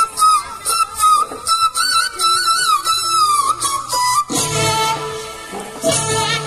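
Recorded folk dance music played over loudspeakers: a solo flute-like melody with quick ornaments over steady drum beats, with the full accompaniment and bass coming back in a little after four seconds.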